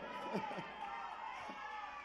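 A brief quiet pause in a live club room: faint audience murmur with a few short, distant voices.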